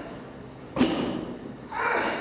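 A 390 lb barbell's bumper plates strike the floor once, sharply, about a second in, as a deadlift rep is set down. Near the end the lifter lets out a forceful breath as the bar is pulled back to lockout.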